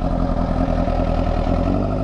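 Honda sport motorcycle engine running at a steady pitch while the bike cruises.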